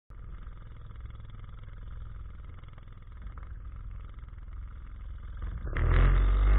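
A 9.9 hp Mercury outboard motor running steadily, becoming much louder near the end.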